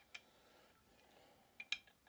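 Faint small metallic clicks as a Heritage Barkeep single-action revolver's cylinder is fitted back into the frame: one click near the start and a quick couple of clicks about a second and a half in.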